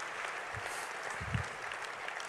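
Banquet audience applauding steadily.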